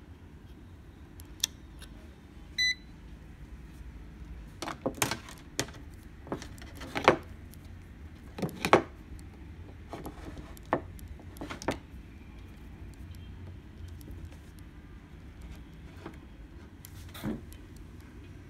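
Digital AC clamp meter giving a single short beep as its rotary dial is switched on, followed by scattered clicks and knocks of the meter and its test leads being handled on a wooden tabletop.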